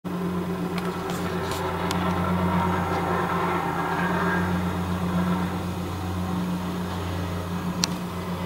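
Plate compactor's engine running in a steady, unbroken drone as it tamps fresh asphalt. A few sharp clicks come in the first two seconds and one more near the end.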